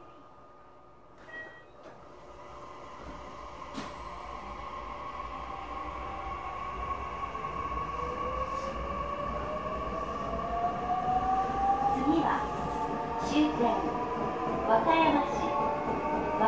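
Electric train pulling away from a station and accelerating, heard from inside the carriage. Its running noise grows steadily louder, and from about halfway a motor whine rises in pitch. A voice announcement begins near the end.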